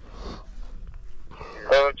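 Faint, unsteady noise for about a second and a half, then a man starts speaking loudly in Russian near the end.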